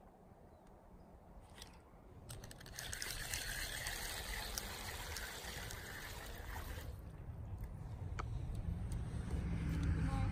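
A hooked bluegill splashing at the surface as it is reeled in, strongest from about three to seven seconds in, after a few sharp clicks near the start.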